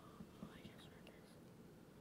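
Faint whispering among several children leaning together and conferring in hushed voices over a quiz answer.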